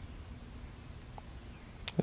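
Faint outdoor background: a quiet hiss with a thin, steady high-pitched tone and a soft click near the end.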